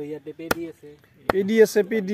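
Two sharp chops of a machete blade cutting through meat into a wooden log chopping block, about half a second in and again just after a second in.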